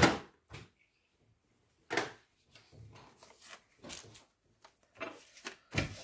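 Hands handling and pressing down a freshly glued paper panel on a craft mat: a few scattered knocks and taps with faint rustling between, the loudest right at the start and just before the end.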